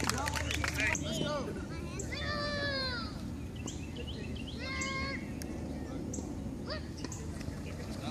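Distant shouting voices of coaches and spectators across an open field, in short calls with gaps between them, with a few sharp clicks in the first second.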